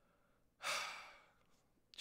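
A man's single sighing breath: starting about half a second in, a soft rush of air that fades away over nearly a second.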